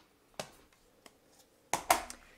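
Plastic ink pad cases being handled on a wooden table: one light click about a third of the way in, then two sharper clicks close together near the end.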